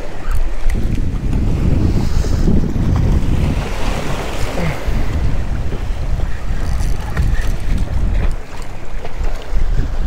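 Wind buffeting the microphone in a loud, uneven rumble, over the wash of waves against jetty rocks.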